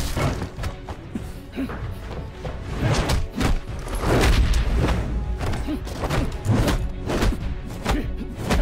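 Martial-arts film fight soundtrack: dramatic score music under a rapid run of punch and body-impact sound effects.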